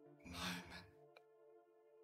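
Ambient meditation music with sustained held tones, and about a quarter of a second in, a close-miked breath from the narrator, a sigh-like breath lasting about half a second. A faint single click follows a little after a second in.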